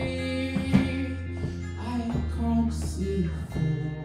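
Live indie-pop band playing a mostly instrumental passage: guitar notes over a steady, sustained bass line, with a few sharp drum hits.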